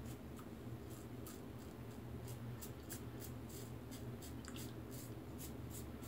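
Merkur 34C double-edge safety razor scraping through lathered stubble in quick, short strokes, several a second, with a faint scratchy rasp on each stroke.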